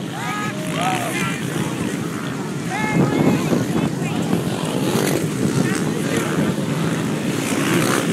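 A pack of off-road racing motorcycles running hard across open sand at a mass start, a dense engine noise that swells about three seconds in. Spectators shout over it, with wind buffeting the microphone.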